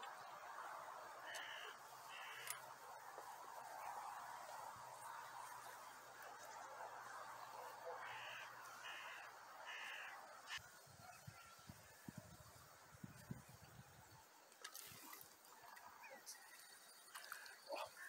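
Near silence: a faint outdoor background with a distant bird giving short call notes, twice about a second in and three times around the middle. A few low bumps and sharp clicks follow later on.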